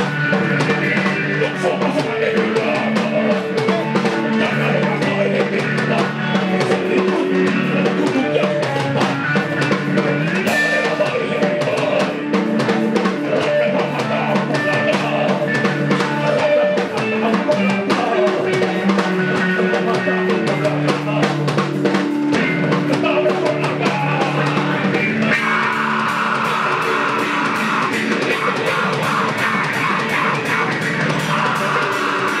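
Live rock band playing: drum kit and electric guitar through a Marshall amplifier, with a singer on the microphone.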